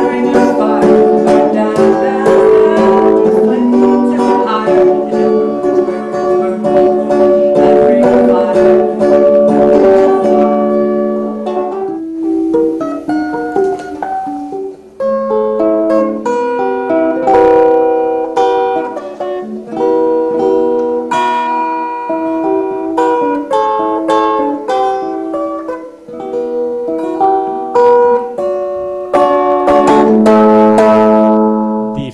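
Electric ukulele played solo, amplified. For about the first ten seconds it is strummed in full chords, then it moves to sparser picked notes and short phrases with brief pauses.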